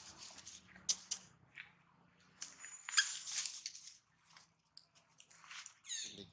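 Dry fallen leaves rustling and crackling in irregular bursts as macaques move and scuffle on the leaf litter, with a few sharp clicks. A short high-pitched animal call comes right at the end.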